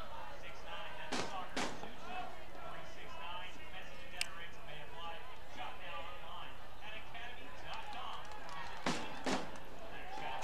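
Soccer stadium ambience: a steady murmur of crowd and players' voices, broken by sharp thuds of the ball being kicked, twice about a second in and twice near the end.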